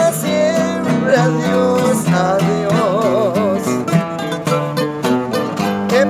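Acoustic guitars playing together in an instrumental passage between sung verses: a picked lead melody over strummed chords.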